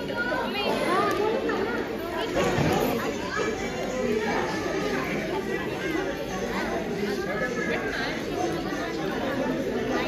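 Crowd chatter: many people talking at once, with overlapping voices that echo in a large hall.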